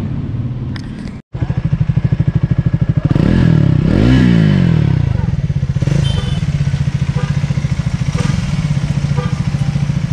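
Triumph Speed 400's single-cylinder engine idling with a fast, even beat, revved once about three seconds in, rising and falling back over about a second and a half, then idling again.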